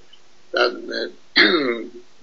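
A man speaking Persian in two short bursts with pauses between, his voice thin and band-limited as over a webcam link.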